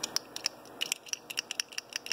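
A 3D-printed plastic push button being handled in the fingers: a quick run of small, light clicks and rattles, sparse at first and coming thick and fast in the second half.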